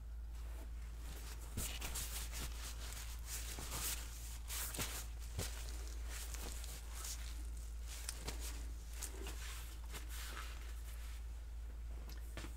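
Scattered faint handling noises, light clicks, knocks and rustles, as someone moves about and tidies up beside the work table, over a steady low hum.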